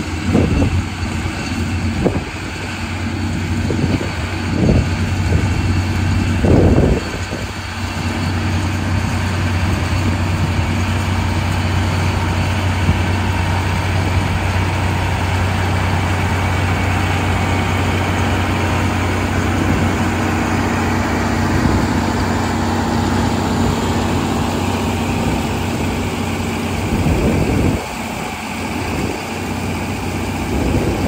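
John Deere row-crop tractor engine running steadily under load as it pulls a PTO-driven pull-type combine through the field, the combine's machinery running with it. A few short low bumps are heard in the first seven seconds and again near the end.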